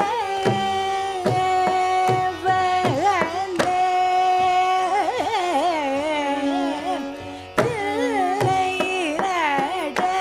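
A woman singing Carnatic music, holding long notes and moving between them in wavering ornamented slides, over scattered drum strokes.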